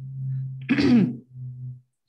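A man clears his throat once, about halfway through, between short low hums of his voice.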